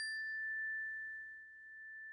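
The lingering ring of a struck chime: one high, pure tone slowly fading, with a slight swell again near the end.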